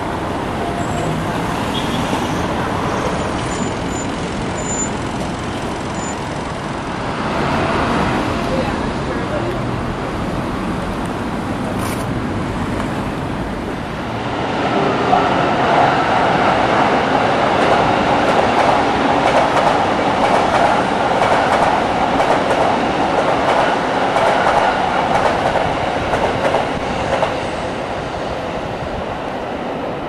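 Street traffic noise, then from about halfway an electric commuter train running past on the tracks below, louder for about ten seconds before it fades.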